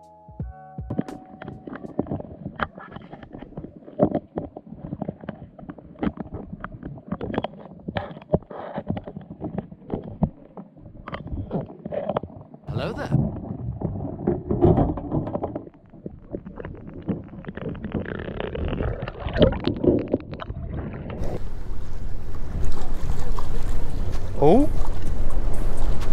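Underwater camera audio from inside a crab trap: irregular clicks and knocks of the trap and camera housing shifting in the water, with low rumbling, in sped-up footage. Near the end it gives way to a steady rush of wind on the microphone.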